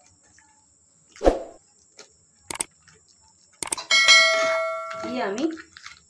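Kitchenware knocking a couple of times, then a metal utensil clanging and ringing, the ring fading over about a second near the end.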